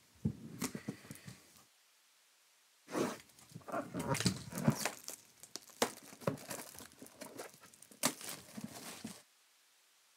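Cardboard trading-card boxes being handled: a short flurry of taps and scrapes, then after a pause a longer run of knocks, slides and rustling as a box is picked up and set down on the table, stopping near the end.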